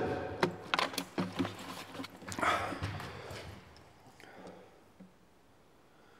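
A run of short, sharp clicks and knocks in the first two seconds, then a breath, dying away to near quiet near the end.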